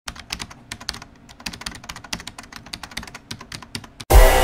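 Typing on a computer keyboard: a fast, irregular run of key clicks, about eight a second.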